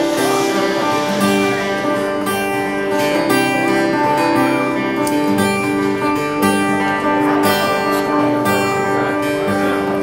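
Solo acoustic guitar playing the opening bars of a song, chords strummed in a steady rhythm with the notes ringing on between strokes.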